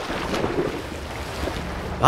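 Water splashing and churning as a swimmer swims freestyle strokes in a pool, a steady rushing noise.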